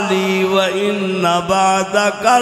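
A man's voice chanting in long, drawn-out melodic notes through a microphone: a preacher intoning his sermon in a sung style rather than speaking.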